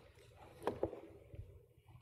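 Handling noise from a handheld microphone being passed along: a low rumble and rustle with two sharp knocks close together a little under a second in, then a few fainter bumps.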